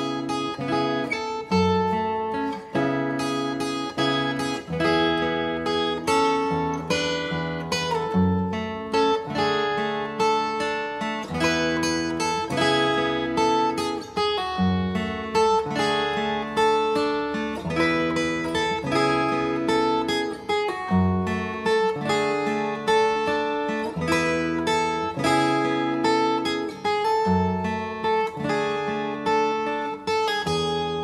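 Solo steel-string acoustic guitar played fingerstyle: a steady, flowing run of plucked melody notes over low bass notes.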